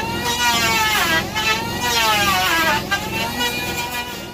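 Chainsaw cutting through a log, its engine pitch sagging under load and picking up again a few times.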